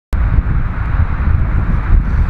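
Wind buffeting the microphone: a loud, steady low rumble with a fainter hiss above it.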